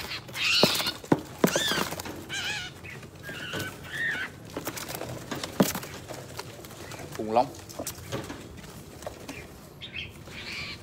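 Bird calls: several short high chirps and whistled notes in the first half, with scattered clicks and knocks, and a short wavering lower call about seven seconds in.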